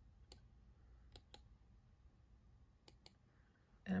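Five short, sharp clicks at a computer: one single click, then two quick pairs, as a web address is selected and copied.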